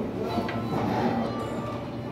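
Voices talking over background music.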